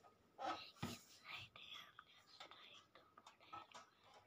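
Faint whispering, with a few soft clicks in between; otherwise near silence.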